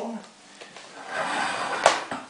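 Plastic lid being pressed onto a clear plastic deli cup: a scraping plastic rustle, then a single sharp snap just before the end.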